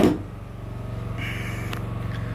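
Inverter generator running steadily with a low hum. A single sharp knock sounds right at the start.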